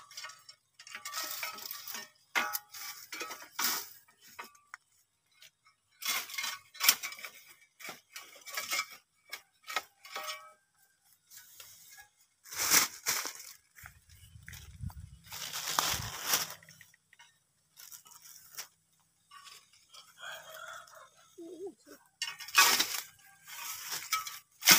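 Dry bamboo leaves, sheaths and twigs crackling, rustling and snapping in irregular bursts as someone pushes through a bamboo thicket, with a low rumble of phone handling about halfway through.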